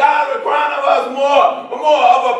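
A preacher's voice shouting through a handheld microphone in a drawn-out, chanting cadence, loud and pitched, with no clear words.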